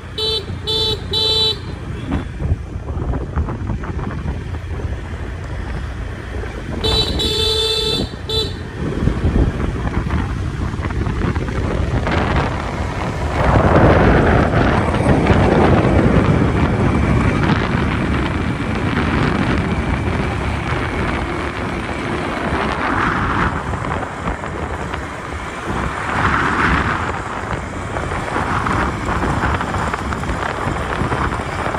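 Motorbike horn: three quick toots near the start and one longer toot about seven seconds in. Under the horn are the bike's running and wind buffeting the microphone while riding, louder from about halfway through.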